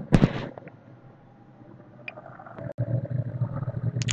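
A pause between spoken phrases: a short burst of noise at the very start, then low steady room noise with a faint hum.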